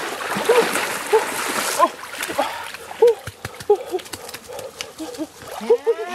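Water splashing as a person wades through a shallow stream carrying a goat, then, about two seconds in, sharp snaps and rustling in brush. Short repeated calls come and go throughout.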